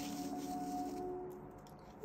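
Faint rustle of a paper towel wiping wet resin off a silicone spatula, under a faint steady hum that fades out about a second and a half in.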